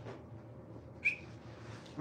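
A single short, high squeak from a squeaky rubber ball toy, about a second in.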